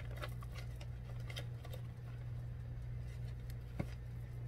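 Faint rustling and small ticks of a fabric project bag and stitching cloth being handled, with one sharper click near the end, over a steady low hum.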